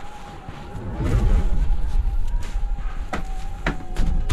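A steady high drone with a low rumble like wind swelling beneath it, then two sharp knocks on a door near the end, about half a second apart.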